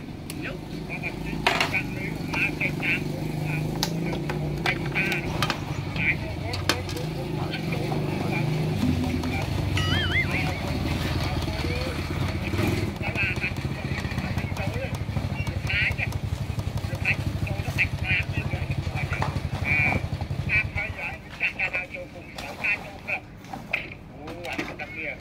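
A steady low engine-like rumble that stops near the end, with scattered clicks and short higher-pitched bursts over it.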